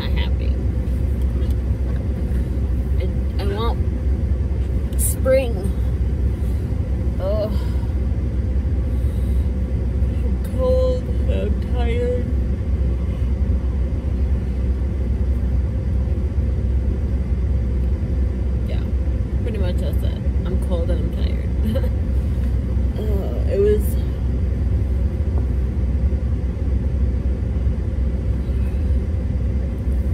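Steady low rumble inside a car's cabin, even in level throughout, with short snatches of faint speech now and then.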